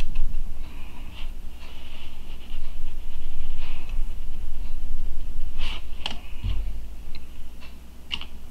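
Foam sponge brush dabbing paint onto a small diecast car body, a run of soft scratchy dabs over a steady low hum. A couple of sharp clicks come about six seconds in, followed by a dull thump.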